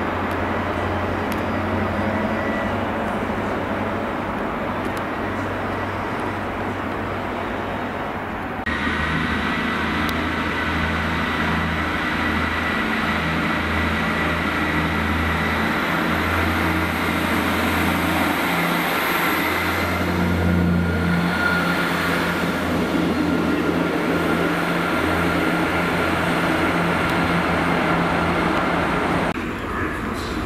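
Diesel engine of an HST power car running as the train comes into the platform. About nine seconds in, this gives way to a Class 158 diesel multiple unit running steadily at the platform, a little louder about twenty seconds in.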